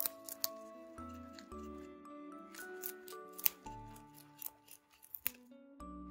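A Flemish Giant/French Lop mix rabbit crunching a leaf of Chinese cabbage, with sharp crisp bites at irregular intervals, over background music.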